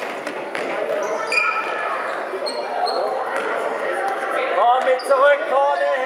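Indoor football in a reverberant sports hall: a ball kicked and bouncing on the hard floor, with short high squeaks of trainers. High-pitched voices shout near the end.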